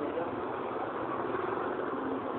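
A motor vehicle engine running steadily at the roadside, with a constant hum of traffic.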